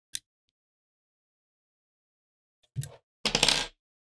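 A small steel hex key set down on a wooden tabletop. There is a light tick at the start, then a knock and a brief metallic clatter lasting about half a second near the end.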